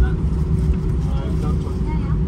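Airbus A320 cabin noise during taxi: a steady low rumble from the engines at taxi power, with a constant hum. Faint voices are heard over it.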